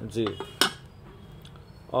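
A melamine serving spoon clicking once, sharply, against the lid of a melamine serving dish, a little over half a second in.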